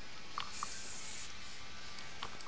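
Aerosol spray paint can giving one short burst of spray about half a second in, lasting under a second, over a faint steady hiss.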